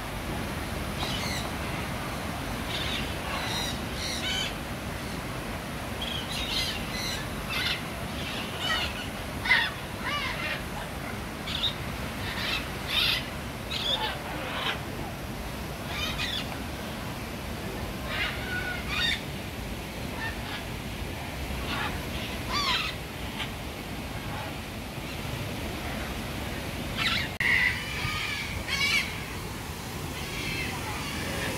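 Birds calling: many short calls, one at a time, scattered throughout, the loudest about a third of the way in and several close together near the end, over a steady background hiss.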